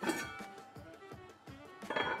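Background music, with a knock right at the start as a heavy enamelled casserole is set down on a wooden board, and a clink near the end as its lid is lifted off and set aside.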